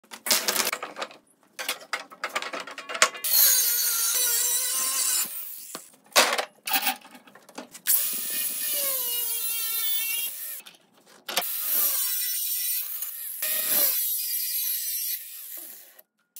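Power grinder running on steel rebar in several bursts of a few seconds each, its motor pitch sagging as the disc bites and recovering as it eases off. Sharp clanks and clicks of metal being handled come in between, mostly at the start.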